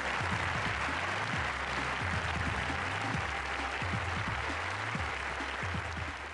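Audience applauding steadily over music with a low, repeating bass line.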